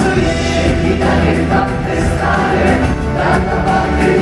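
Live band playing a song on stage, with several singers singing together over it.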